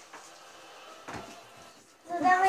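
Quiet room noise with one soft, dull knock a little after a second in.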